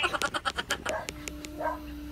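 A burst of rapid, pulsing laughter that thins out and dies away within the first second. After it comes a faint steady tone that sags slightly in pitch at the end.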